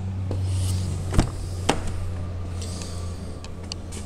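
Rear door of a 2001 Mercedes-Benz S320 being opened by hand: a sharp latch click about a second in, then a lighter click half a second later, over a steady low hum.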